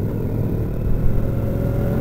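Cruiser motorcycle's engine running steadily while riding at road speed, a low, even sound with no change in revs.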